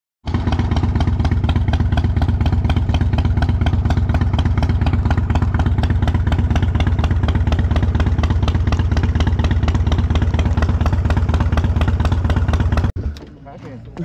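A 1997 Harley-Davidson Dyna Low Rider's Evolution V-twin idling steadily with an even, rapid exhaust pulse; the sound cuts off suddenly near the end.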